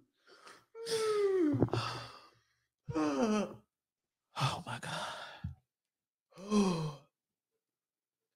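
A woman's spent laughter: four long sighing vocal bursts, each falling in pitch.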